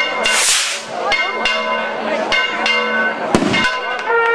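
A hand-held stick rocket firing off with a short hiss, followed by a bell ringing in quick repeated strikes, and a loud bang about three and a half seconds in.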